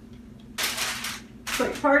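A short dry scraping rustle, a little under a second long, from food-prep handling at the table, with a light click just after. A woman starts speaking near the end.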